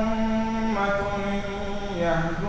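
A man's voice reciting the Quran in melodic Arabic chant, holding long notes, with one shift of pitch about three-quarters of a second in.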